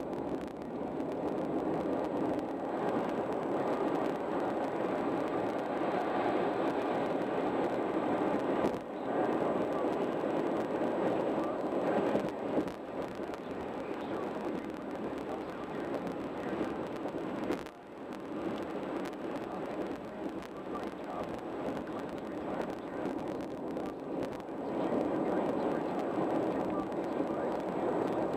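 Steady tyre and road noise heard from inside a car's cabin at highway speed, dipping briefly twice.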